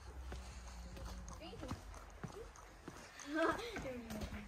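Faint children's voices with scattered light taps and footsteps, over a low hum that fades out about halfway through. A child's voice rises briefly near the end.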